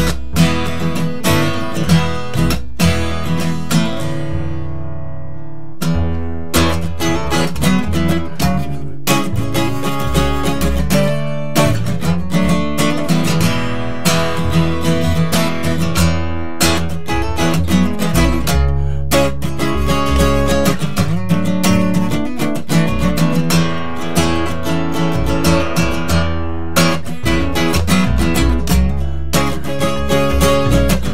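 Acoustic guitar strummed over an upright double bass plucked by hand, an instrumental passage with no singing. About four seconds in, a chord is left to ring and fade, and the strumming starts again about two seconds later.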